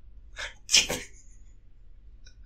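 A man's stifled, breathy laugh: two short bursts of air about half a second apart, the second louder.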